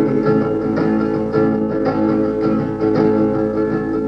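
Solo acoustic guitar playing on its own between sung verses of a folk song, with steady ringing chords and regular picked notes. The sound is a lo-fi 1960s live recording.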